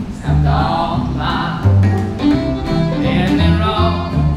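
Live acoustic bluegrass band playing an instrumental passage between sung verses: fiddle, acoustic guitar and banjo over a steady upright bass line.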